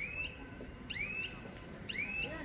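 A bird calling: a short whistled note that rises and then holds, repeated about once a second.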